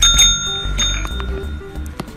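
Green tap-type service bell pressed down by a cat's paw, ringing twice, the second strike under a second after the first, with a clear metallic ring that fades away, over background music.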